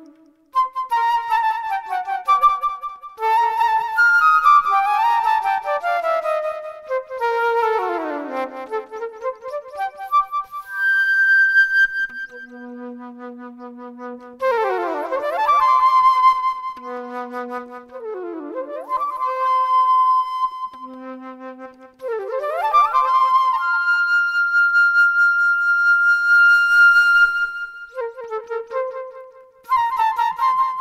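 Unaccompanied flute playing a free improvisation, with quick rising and falling runs and a few low notes. A long high note is held for several seconds in the second half.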